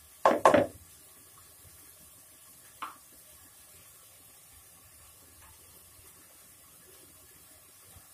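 Two quick sharp knocks of a plastic scoop against a plastic bowl as grated coconut is tipped out, then one faint knock about three seconds in. The rest is quiet room tone.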